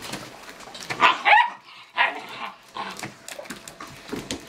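Great Dane puppies barking while play-wrestling: a quick pair of high barks about a second in, then another a moment later.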